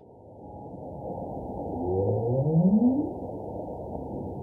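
Muffled, low noise that fades in, with one low call sweeping upward in pitch about two seconds in.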